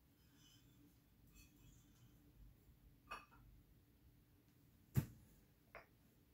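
Plastic weight containers being stacked by hand onto a hanging model-crane load. Faint rustling, then a click about three seconds in and a sharper plastic knock about five seconds in, with a lighter click just after.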